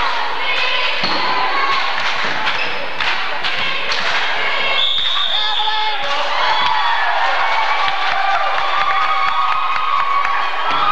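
Basketball game in a school gym: the ball bouncing on the hardwood floor amid crowd voices, with a referee's whistle blown once for about a second near the middle.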